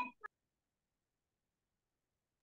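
The end of a short spoken word and a brief click in the first quarter second, then dead silence, as on a video call whose audio is gated off.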